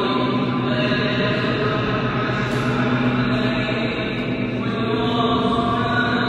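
A chanting voice holding long notes that change pitch every second or two, over a steady low drone.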